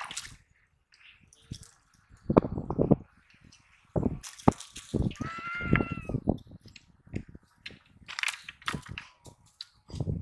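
A freshly landed fish flopping on dry leaves and bare soil: irregular bouts of slaps, knocks and rustling with quiet gaps between them. A brief high-pitched call sounds midway.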